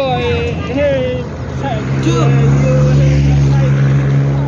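A motor vehicle's engine running steadily close by, coming in about two seconds in and becoming the loudest sound, with voices at the start.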